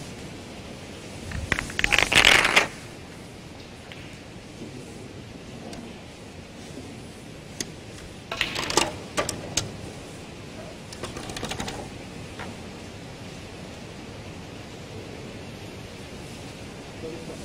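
Snooker balls clacking together as they are handled and set back on the table, in a loud clattering flurry about two seconds in, another about eight to nine and a half seconds in, and a softer one near twelve seconds.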